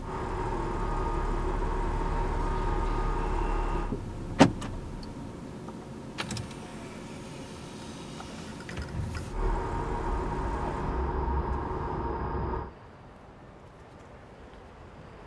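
Driverless Audi car running at low speed, with a steady electric whine that stops after about four seconds and comes back about nine and a half seconds in. A sharp click comes just after the whine first stops, with lighter clicks later. The sound cuts off suddenly near the end.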